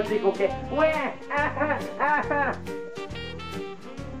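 A child imitating a fire-engine siren with her voice, a string of rising-and-falling wails, over background music.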